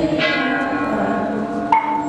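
A bell struck twice, about a quarter of a second in and again near the end, each stroke ringing on over steady music.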